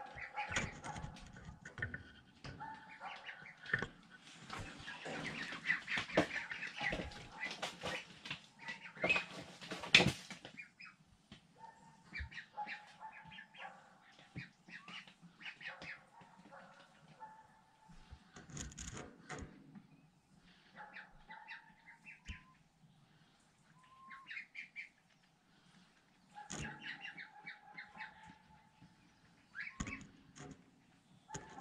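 A flock of young mulard ducks peeping and calling in short, scattered calls. In the first ten seconds there is a louder stretch of wing-flapping and rustling among the crowded birds, ending in a sharp knock.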